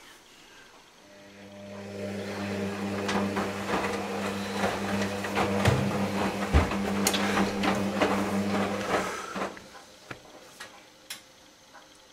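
Hoover Dynamic Next washing machine in its wash cycle: the drum motor runs with a steady hum for about eight seconds, with water sloshing and the wet load knocking as the drum turns, then stops for a pause.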